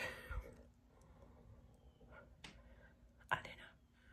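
Mostly quiet room tone after a voice trails off. A single sharp click comes about two and a half seconds in, and a short breath follows a little after three seconds.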